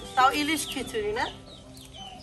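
Chickens clucking in a quick run of short calls through the first second or so, then quieter.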